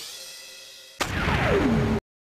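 Electronic intro sting for an animated logo: a rising synthesized sweep fades away, then about a second in a loud hit with a steeply falling pitch glide, cut off suddenly at the end.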